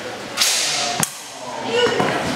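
Steel practice swords clashing in sparring: a sharp ringing clang about half a second in, then a quick click of blade contact about a second in.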